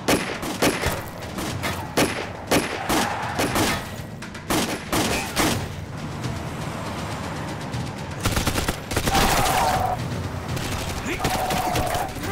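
Gunfire in a film car chase: a string of pistol shots fired from a moving van, irregular and several a second through the first six seconds. About eight seconds in, a louder stretch of rushing noise with a steady whine takes over.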